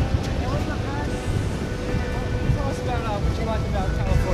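Wind rumbling on the microphone over beach surf, with faint voices talking.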